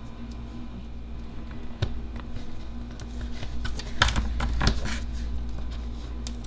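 Small scissors snipping through a sticker sheet: scattered short clicks, with a quicker run of snips about four to five seconds in. A steady low hum runs underneath.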